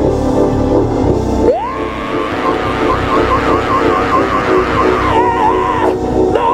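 Live gospel band playing, with drums, keyboards and electric guitars. A high lead line slides up about a second and a half in and then wavers quickly over the steady beat.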